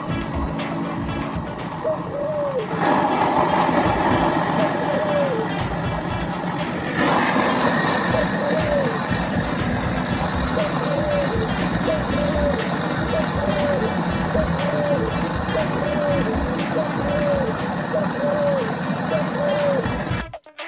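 Handheld butane gas torch on a canister burning with a steady hiss, growing stronger about three seconds in and again about seven seconds in. Through the second half a short rising-and-falling chirp repeats about once a second.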